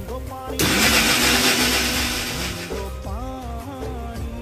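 Bajaj mixer grinder motor running in a short burst of about two seconds, grinding fresh maize kernels with spices; it starts suddenly and cuts off sharply. Background music plays under it.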